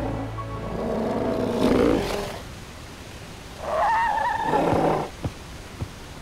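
Cartoon dinosaur calling out twice: a rough, growly call in the first two seconds, then a higher, wavering cry about four seconds in, over background music.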